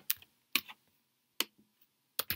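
Three separate sharp clicks at a computer while a shape is being drawn on a document, the first near the start, the next about half a second later and the last about a second after that.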